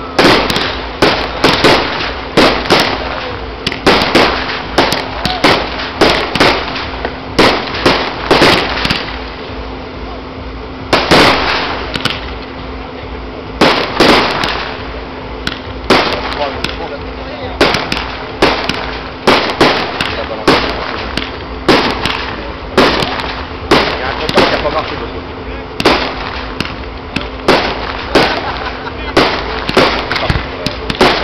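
Aerial fireworks display: shells bursting in quick succession, dozens of sharp bangs, one to several a second, with a short lull about ten seconds in.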